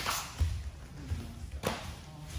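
Dull thumps of people moving on foam training mats: a low thump about half a second in and a sharper knock about a second and a half in, over faint rustling.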